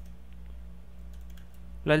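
Typing on a computer keyboard: a quick run of light key clicks, over a steady low hum. A man starts speaking near the end.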